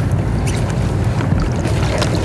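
Steady wind rumble on the microphone over lake water, with a few sharp splashes near the end as a king salmon thrashes at the landing net beside a kayak.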